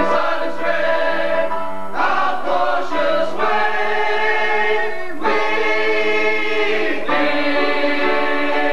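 Operetta chorus singing full held chords, changing about every one to two seconds.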